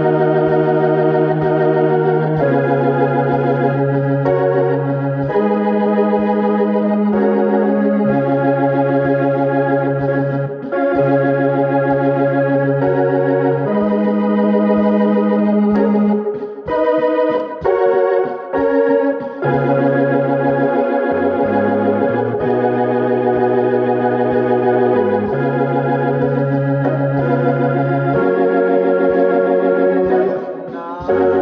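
Solo keyboard playing praise-and-worship music: full held chords that sustain without fading over long bass notes changing every couple of seconds. About halfway through, the playing breaks into short, clipped chord stabs for a few seconds before the held chords return.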